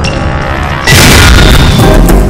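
Dramatic background music, then about a second in a sudden, loud cinematic boom as a TV channel logo sting begins, its heavy rumble carrying on under the music.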